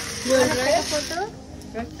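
Coffee beans being stirred in a roasting pan with a bundled-stick stirrer: a dry, scraping rustle that stops about a second in. A voice speaks over it.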